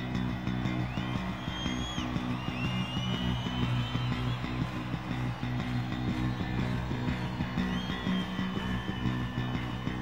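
Rock band playing live, an instrumental passage: long lead notes that slide up into held pitches, over a steady bass line and sustained chords.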